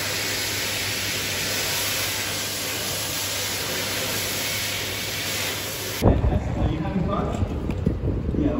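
Electric hand dryer blowing: a loud, steady rushing hiss over a low hum. It cuts off abruptly about six seconds in, giving way to outdoor street bustle with voices.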